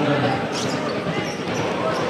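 Basketball bouncing on a wooden court, with voices talking over it.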